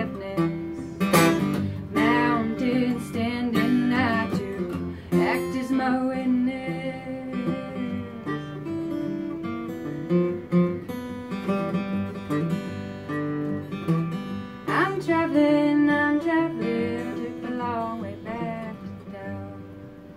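Solo acoustic guitar playing a blues passage with no lyrics sung, growing gradually quieter and dying away near the end.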